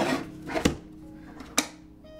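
Two sharp clicks about a second apart as a large rigid packaging box is handled on a desk.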